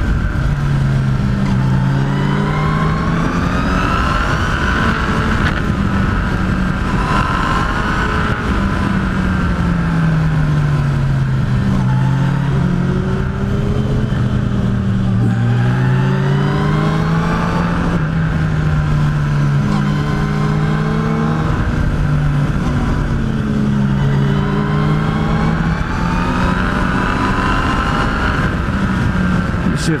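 Yamaha FJR1300's inline-four engine under way on a winding road, its revs rising and falling every few seconds as it accelerates out of bends and eases off, over a steady rush of wind.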